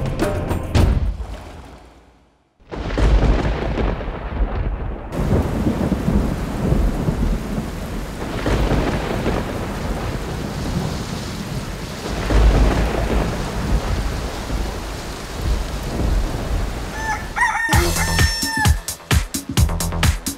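Thunderstorm: heavy rain with rolling thunder, with strong claps about three seconds in and again about twelve seconds in. Near the end a brief crowing call sounds and dance music with a steady beat starts.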